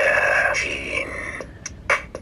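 Darth Vader Bop It! electronic toy playing through its small speaker after its head is pressed to start: a held, breathy electronic sound for about a second and a half, then a clicking beat of about three ticks a second begins.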